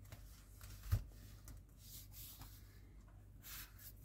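Faint handling of a plastic scale-model wheel and chassis: a soft knock about a second in, then light rustling and scraping of plastic parts, a little louder near the end.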